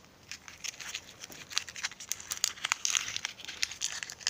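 The paper wrapper of a twist-wrapped caramel candy is being untwisted and unfolded by hand. It crinkles in quick, irregular crackles.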